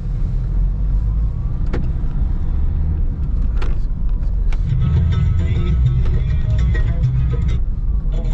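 Steady low road and engine rumble of a car being driven, heard from inside the cabin, with guitar music that is faint in the first half and comes back strongly about halfway through. Two brief clicks are heard in the first half.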